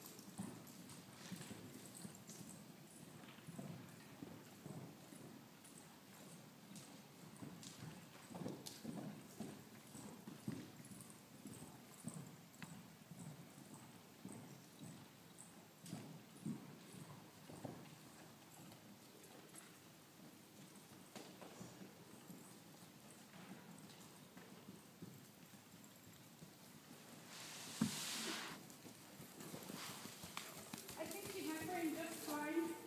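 Faint, soft thuds of a horse's hooves cantering on deep sand arena footing. About two seconds before the end, as the horse passes close, there is a louder thump and a short hissing rush.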